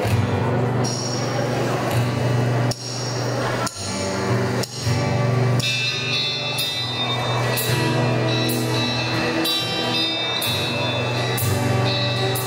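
Acoustic guitar playing an instrumental through a PA over a steady low bass line. From about halfway, a regular beat of high ticks joins in.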